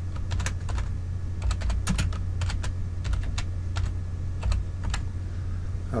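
Computer keyboard being typed on: a run of separate key clicks with short pauses, over a steady low hum.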